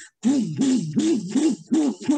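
A person's voice imitating the bass of a neighbour's music: about six short hummed 'bum' beats in a row, each rising and falling in pitch, roughly three a second.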